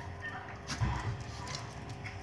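Small dogs' claws clicking and tapping on a tiled floor as they move about, with a quick cluster of taps about a second in.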